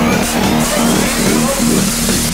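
Electronic dance music track with a repeating synth pattern and a rising sweep in the high range.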